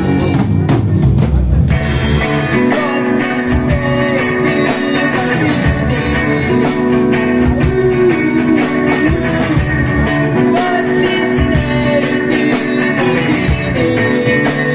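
Live band playing: a woman singing over electric guitar, bass and drum kit, with steady, evenly spaced drum hits.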